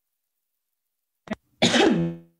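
A woman coughing into her hand, twice: a short cough about a second and a quarter in, then a longer, louder one near the end.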